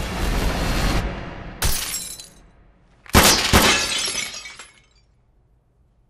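Film action sound effects: a rushing noise fades out, a sharp crash comes about one and a half seconds in, and after a brief hush two loud cracks land close together with glass shattering and tinkling away. Near silence follows in the last second.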